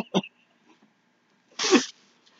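Muffled laughter through a mouth stuffed with marshmallows: a brief laugh fading out just after the start, then about a second and a half in a single sudden breathy, snorting burst of laughter with a falling voice.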